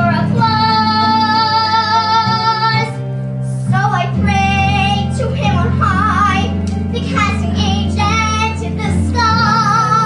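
A young girl belting a musical-theatre song over instrumental accompaniment. She holds one long note for nearly three seconds, then sings shorter phrases.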